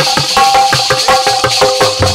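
Instrumental music: a harmonium holding a melody over a brisk, steady beat of drum and rattling percussion.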